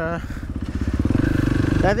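KTM 500 EXC single-cylinder four-stroke supermoto engine on an FMF exhaust with the dB killer removed, accelerating: its firing pulses quicken and rise in pitch over about a second and a half and grow louder toward the end.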